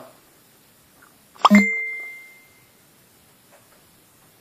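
A single sharp, bell-like ding about a second and a half in, ringing on briefly with a clear tone that fades within about a second.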